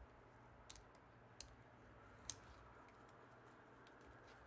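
Faint handling sounds of a craft knife and a metal ruler on a cutting mat: three small sharp clicks, the loudest a little past two seconds in, over a quiet room.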